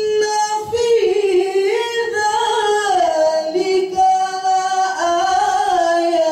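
A young man chanting an Islamic recitation in a high, melismatic voice into a microphone, with long held notes that slide up and down in pitch. A new phrase begins about a second in.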